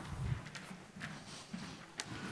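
Footsteps on a stage: a few knocks and soft thuds about every half second.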